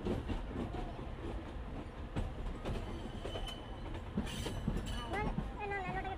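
Passenger train running, heard from inside the carriage: a steady low rumble with scattered sharp clicks from the wheels on the track, and a brief high squeal about four seconds in. Voices start near the end.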